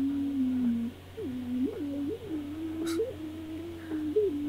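A cartoon character's voice humming a wordless tune in a thin, reedy line, holding low notes and sliding up and back down about four times.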